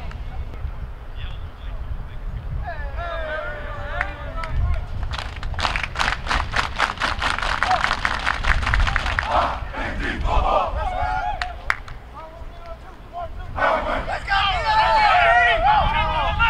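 A football team in a huddle clapping in unison, a quick even rhythm of about five claps a second lasting a few seconds, after one voice calls out. Near the end many players shout together.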